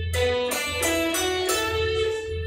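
Electric guitar playing single picked notes one after another through the B minor pentatonic scale, about five notes, the last left ringing.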